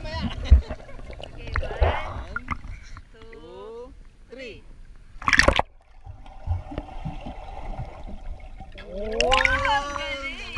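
Splashing water as a child swims through a pool toward a GoPro at the waterline, with one loud splash about five seconds in. After it the sound goes muffled for a few seconds while the camera is under water. Short voice sounds come around the middle and again near the end.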